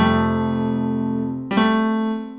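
Electronic keyboard with a piano sound: an F major chord struck and left ringing, then a single C played about one and a half seconds in.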